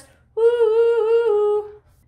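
A voice singing unaccompanied, holding one long note, steady in pitch with a slight waver, for about a second and a half.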